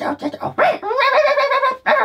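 A man doing a silly nonsense creature voice for sock-puppet aliens: short squeaky babbling sounds, then one long held note in the second half.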